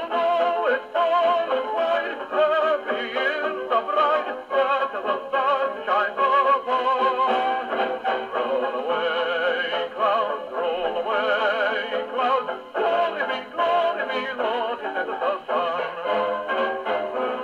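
A dance-band 78 rpm shellac record playing on an HMV 101J wind-up portable gramophone, with a vocal refrain over the band. The sound is thin and narrow, lacking deep bass and high treble, as an acoustic gramophone gives.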